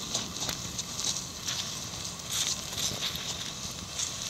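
Thermite still burning and glowing in a metal bowl: a steady hiss with scattered, irregular crackles and pops.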